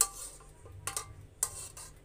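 Metal ladle knocking and scraping against a metal cooking pot while rice pudding is scooped out, with three short sharp clinks: one at the start, then two more about a second in.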